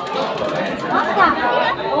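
Several people talking over one another, with indistinct chatter and no single clear voice.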